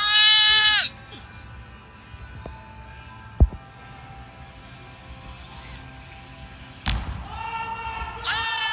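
A long, high, held shout at the start, then steady hum of a large indoor ramp hall with a sharp thump a few seconds in. Near the end comes a sudden crash of noise as the bike and rider drop into the foam pit, followed at once by loud whooping and shouting.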